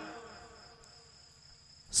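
A gap in amplified devotional singing. The last sung phrase fades out over the first half-second, leaving near silence with a faint, steady high-pitched tone until the voice comes back right at the end.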